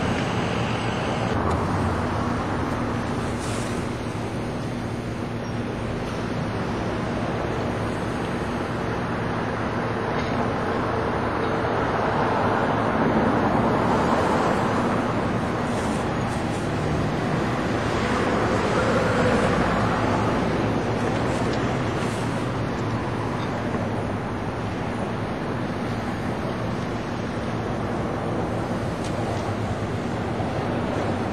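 Street traffic going by: a continuous rush of passing cars that swells twice around the middle.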